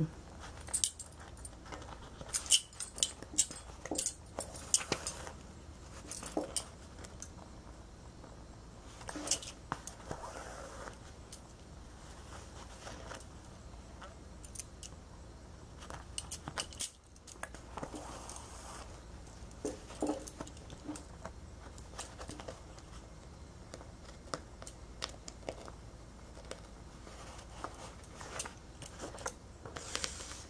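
Light, scattered clinks of stacked bangles on the wrists as hands stitch a button on by needle and thread, mixed with soft rubbing of thread and cloth; the clinks come thickest in the first few seconds and again near the end.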